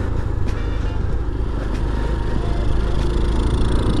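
Boom Vader 125cc single-cylinder four-stroke engine running at a steady pace while the bike is ridden, mixed with steady wind rumble on the microphone.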